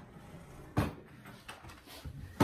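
A single sharp knock a little under a second in, a hard object set down or bumped, against faint room noise and small handling sounds.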